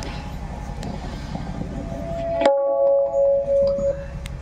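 Low hum and faint murmur through an amplified sound system. About two and a half seconds in there is a sharp click, the hum cuts out, and a steady held musical note sounds for over a second.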